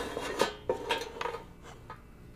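A white palette tray being moved on a wooden tabletop: a few knocks and clinks with a short scrape in the first second, then quieter handling.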